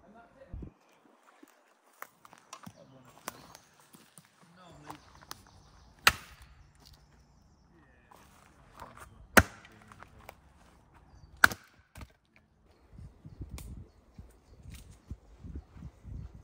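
Hatchet splitting firewood on a chopping stump: three sharp cracks of the blade striking the wood, a few seconds apart, with fainter knocks in between.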